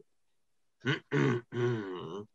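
A man clearing his throat in three short voiced grunts about a second in, the last one the longest.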